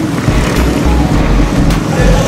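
Several racing motorcycles passing close through a hairpin bend, their engines running hard, the sound loud and steady.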